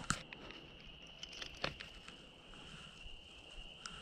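Faint, steady high-pitched insect trill, typical of crickets, with a few soft clicks, the clearest a little over a second and a half in.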